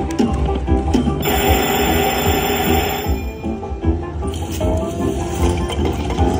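Huff N' More Puff video slot machine playing its free-games bonus music over a steady low beat while the reels spin. A hissing whoosh sounds about a second in and lasts about two seconds.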